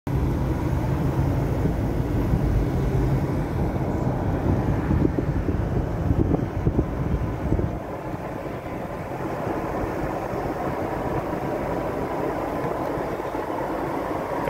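Road and traffic noise heard from inside a moving car: a steady rush with a heavy low rumble and buffeting that drops away about halfway through, leaving a quieter, even road noise.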